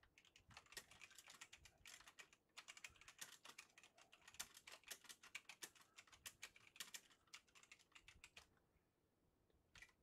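Faint typing on a computer keyboard: a quick run of key clicks that stops about eight and a half seconds in, with one last click near the end.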